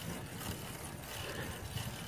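Steady low background rush of outdoor noise with no distinct sound in it.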